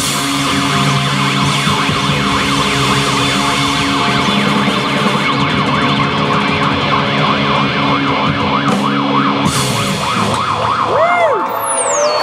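Live rock band holding a final sustained chord on electric guitars, with a wailing tone sweeping quickly up and down over it, siren-like. The held chord drops out about ten seconds in, leaving a few slow sliding tones.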